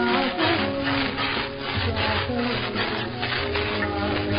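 Hindustani music from a 1930s Columbia 78 rpm shellac disc, with held and gliding tones, played back under heavy rhythmic swishing and crackling surface noise from the worn record.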